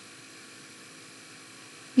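Steady faint hiss with a low, even electrical hum: the background noise of the recording microphone, with no other sound.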